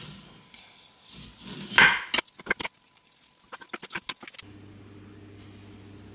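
Kitchen knife chopping plums on a wooden chopping board: a heavier knock of the blade on the wood near two seconds in, then two quick runs of sharp taps. A steady low hum takes over a little after four seconds.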